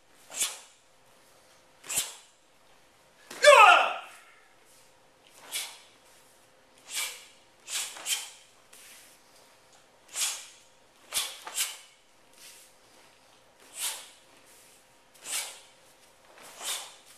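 A taekwondo practitioner performing a pattern at full speed, letting out a short, sharp hissing breath with each technique, about a dozen at uneven spacing. One loud shout, a kihap, falls in pitch a few seconds in.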